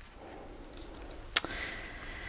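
A paper craft tag being handled and picked up: faint rustling, then a single sharp click about one and a half seconds in.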